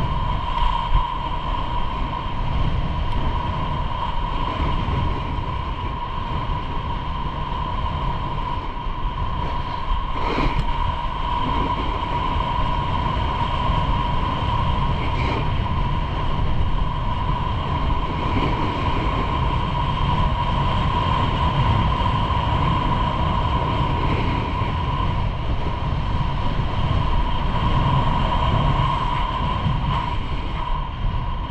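Wind rushing over the microphone during a fast downhill run, with the steady hiss of sliding over packed, groomed snow and one brief knock about ten seconds in.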